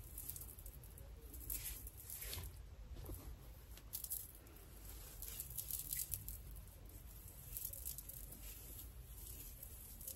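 Faint, irregular crackling and rustling of coily natural hair as two-strand twists are unravelled and pulled apart by fingers.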